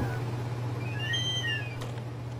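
Wall-mounted air conditioner running with a steady low hum. About a second in, a short high squeak-like tone rises and then falls.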